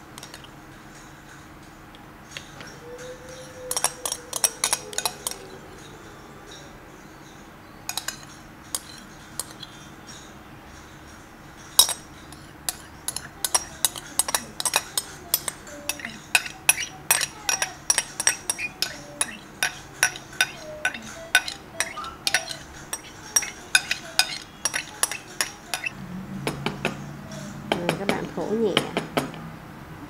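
Metal spoon clinking and scraping against a glass bowl while scooping rice porridge out. A few clicks come early, then a long run of quick taps in the second half.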